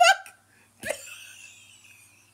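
A woman laughing hard: a laugh trails off, then about a second in she gives one sharp, hiccup-like gasp, followed by a fading breathy exhale and a couple of short laughing sounds near the end.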